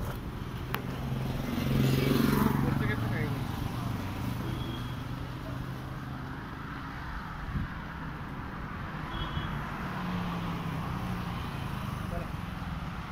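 Indistinct talking over a steady low hum.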